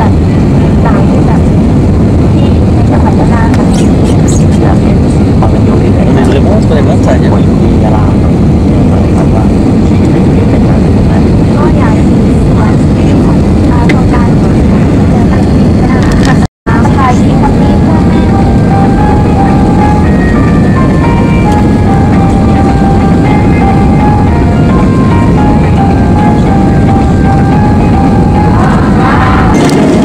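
Loud, steady cabin noise of a jet airliner on final approach: engine and airflow rumble heard from a window seat, with a momentary dropout a little past halfway.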